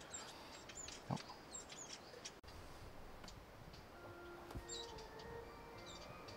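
Faint outdoor ambience with a few short, high bird chirps. Soft music begins to fade in during the second half.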